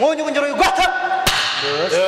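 A monk's raised voice calling out in Tibetan debate, then a single loud, sharp hand clap about a second and a quarter in: the debater's clap that drives home his challenge.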